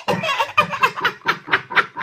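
A woman laughing hard in quick, evenly repeated bursts, about five a second.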